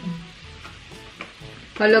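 Slices of pork belly sizzling on an electric tabletop grill plate, a steady sizzle under the table talk.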